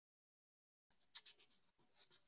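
Near silence in a pause between speech, with a faint brief rustle or click about a second in.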